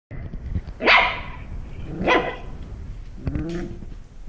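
Six-week-old Shetland sheepdog puppy barking: two sharp barks about a second apart, then a weaker, shorter one near the end.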